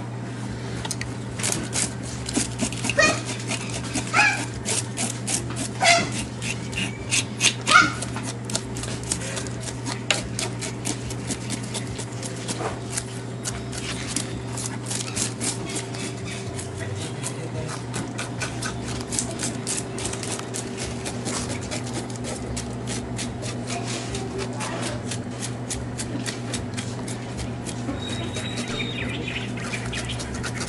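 A knife scraping the scales off a freshly killed tilapia on a concrete sink: rapid, repeated rasping strokes, several a second. A few louder, short pitched sounds stand out in the first eight seconds, and a steady low hum runs underneath.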